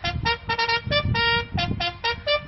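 Brass bugle call played outdoors in quick, separate notes that leap between a few fixed pitches, over a low rumble.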